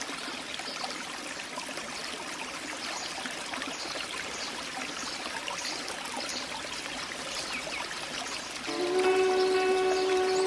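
Water splashing and fizzing with bubbles, a steady crackly rush full of tiny pops. Near the end, music comes in with a sustained chord of steady tones, louder than the water.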